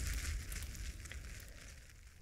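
Crackling fire sound effect, a hiss dotted with small pops, fading out.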